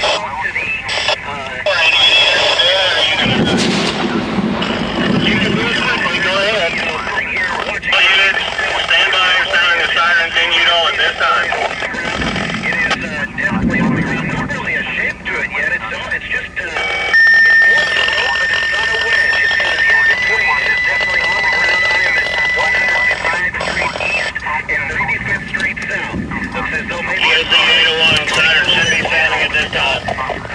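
Indistinct voices over a radio, running through the whole stretch without clear words. About halfway through, a steady high electronic tone holds for about three seconds, steps slightly higher and holds for about three more.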